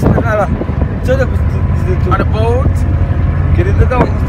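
Steady low rumble of a passenger boat under way at sea, with short snatches of speech over it.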